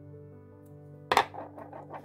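Soft background music with held tones. About a second in, a brief sharp clatter as a plastic ring is set down on a wooden tabletop, followed by light handling noise.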